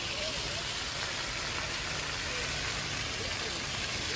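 A small tourist road train's engine idling in a steady low run under a constant hiss, with faint voices of people.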